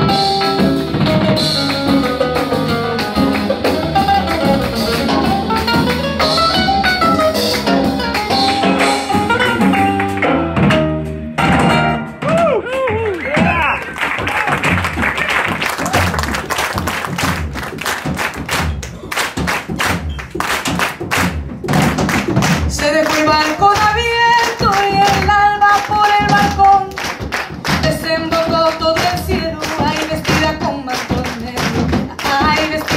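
Latin American band playing live: a nylon-string acoustic-electric guitar solo over electric bass, then a section of rhythmic hand-clapping and drum percussion about halfway through, with held melodic notes returning over the beat near the end.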